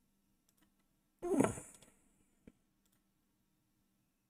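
A few faint, scattered computer mouse clicks over a faint steady low hum. About a second in there is a short breathy exhale from the person at the desk.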